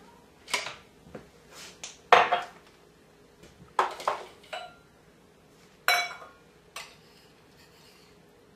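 Kitchen utensils and a measuring cup clinking and knocking against a food processor bowl and the countertop as ingredients are tipped in. There are about nine separate knocks, the loudest about two seconds in. The processor's motor is not running.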